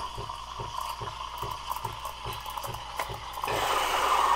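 Breville Barista Pro steam wand steaming milk in a glass pitcher, its tip submerged to spin the milk in a whirlpool: a steady hiss with a fast, regular pulsing under it, turning louder and brighter shortly before the end.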